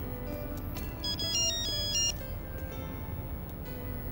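Mobile phone ringtone: a short, high-pitched electronic melody of stepping notes about a second in, lasting about a second, over soft background music.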